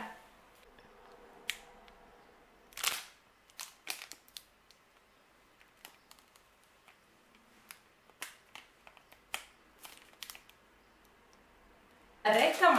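Plastic wrapper of a protein bar crinkling as it is peeled open by hand: scattered sharp crackles and clicks with quiet gaps between, the busiest stretch about three to four seconds in.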